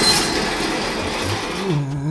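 Limbless Jim animatronic Halloween prop's electric motor whirring steadily as the figure rocks side to side, with a low groaning voice from its sound effects starting near the end.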